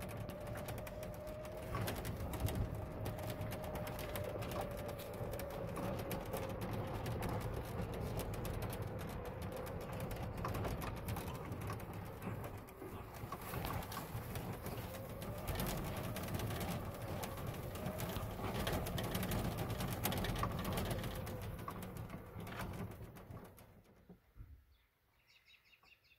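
Electric golf cart driving over rough farm ground: a faint motor whine that slowly drops and rises with speed, over running and rattling noise, dying away near the end. The owner thinks the cart's battery is nearly flat.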